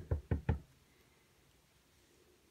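Clear acrylic stamp block with a photopolymer stamp tapped on an ink pad to ink the stamp: four quick knocks at about six a second, ending about half a second in.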